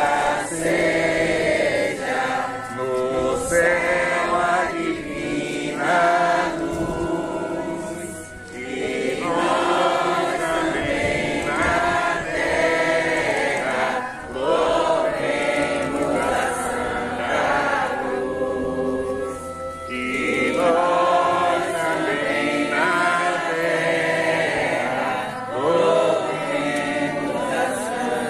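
A group of voices singing a religious hymn together, in long sung phrases with brief pauses between them.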